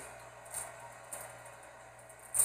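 Knife cutting onions in half, two faint soft knocks about half a second apart, over a low steady kitchen hum.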